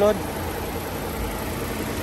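The 2018 Chevrolet Sail's 1.5-litre four-cylinder petrol engine idling with a steady hum, heard in the open engine bay.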